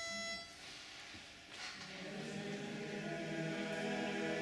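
A single steady pitch-pipe note sounds and stops about half a second in. After a short pause, the men's barbershop chorus comes in a cappella about two seconds in, holding a sustained opening chord that fills out as more voices join.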